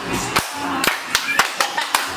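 Hand clapping in an uneven rhythm, a sharp clap every quarter to half second, with voices talking over it.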